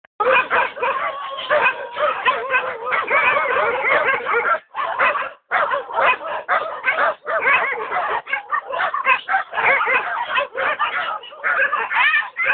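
A large pack of dogs barking all at once, a dense, continuous din of many overlapping barks and yelps, with a brief lull about five seconds in.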